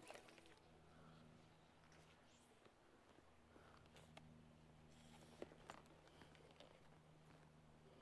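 Near silence: a faint outdoor background with a few soft, scattered clicks, the sharpest about five and a half seconds in.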